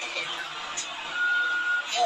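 Steady noisy background with voices, and a single steady high beep starting about a second in and lasting under a second.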